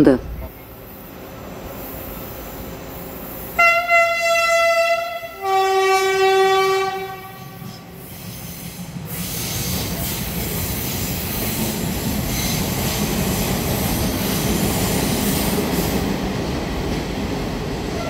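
Electric train horn sounding two blasts about four and six seconds in, the second lower in pitch than the first. From about nine seconds the train's steady rolling and running noise builds close by, with wheel-on-rail noise.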